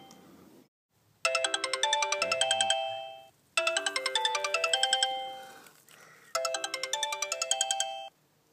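Smartphone ringtone for an incoming call: a short melody of quick, chime-like notes played three times with short pauses between. It stops abruptly near the end, as the call is picked up.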